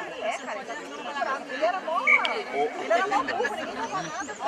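Several people chatting close to the microphone, their voices overlapping in casual conversation.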